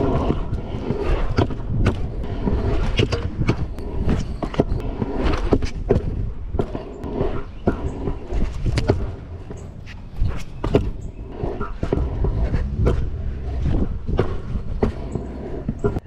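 Stunt scooter wheels rolling over concrete pavement: a steady low rumble broken by repeated sharp clacks.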